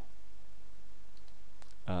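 A few faint computer mouse clicks a little over a second in, over a steady low hum and hiss.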